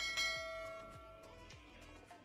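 A bell chime struck once at the start, ringing out and fading over about a second and a half, over background music: the notification-bell sound effect of a subscribe-button animation.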